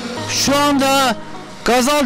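Background music fading out, then a man's loud drawn-out vocal call about half a second in, followed by his speech near the end.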